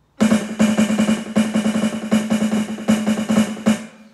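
Electronic drum kit's snare pad, heard through the Yamaha module's sampled snare sound, played as a very fast paradiddle rudiment with regular accents. The stroking starts just after the beginning and stops abruptly shortly before the end.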